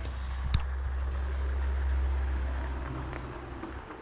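Low rumble of a road vehicle passing, swelling to a peak about halfway through and fading away. A single sharp click comes just after the start.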